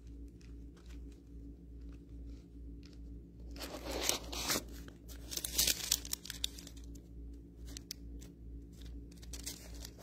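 Thin Bible pages being leafed through by hand, a run of papery rustles and flicks, loudest about four seconds in, with a steady low hum underneath.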